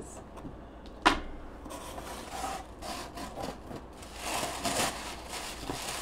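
Cardboard box and crumpled tissue paper being handled: rustling and rubbing as hands dig through the packing, with one sharp knock about a second in.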